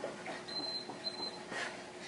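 An interval timer beeps twice, two short high-pitched tones signalling the end of a work interval, over a few soft thuds of feet on carpet.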